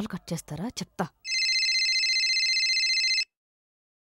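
Telephone ringing: a rapid, trilling ring of several high tones lasting about two seconds, then cut off abruptly.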